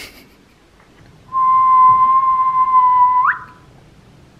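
A single held whistle-like note, steady for about two seconds, then sliding sharply upward just before it stops.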